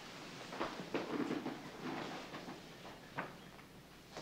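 Faint scattered knocks and rustling of people moving about a room, with a few short knocks standing out.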